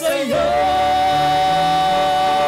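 A woman and a man singing a communion hymn, holding one long sustained note after a brief breath at the start.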